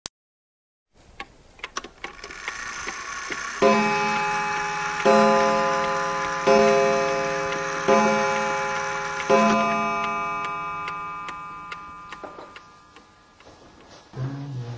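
A clock ticking, then striking five times about a second and a half apart, each stroke ringing on and slowly fading.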